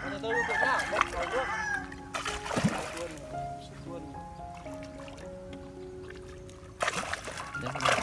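Background music over a hooked, freshly stocked grass carp thrashing at the surface beside a landing net. It splashes in two bursts, one about two seconds in and a longer one near the end.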